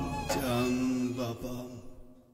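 The closing held note of a Turkish ilahi (Islamic hymn): a sustained chanted tone with its accompaniment, fading out toward the end.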